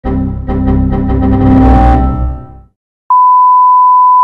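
Computer error-alert sound effect struck again and again, faster and faster until the repeats pile on top of each other, then cut off. After a short gap a single steady beep starts: the test tone that goes with TV colour bars.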